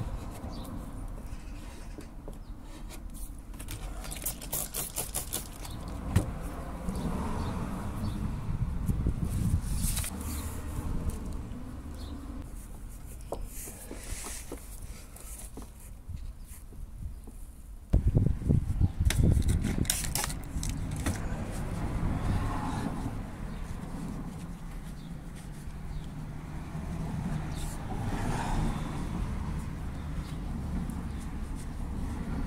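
Outdoor background rumble with scattered small clicks and taps of hand work, and a louder stretch of low rumbling about eighteen seconds in.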